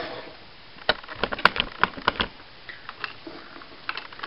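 Hard plastic clicks and knocks from handling a Dino Charge Megazord's T-Rex zord toy, a scattered run of short taps as it is picked up and a Dino Charger is brought to its mouth.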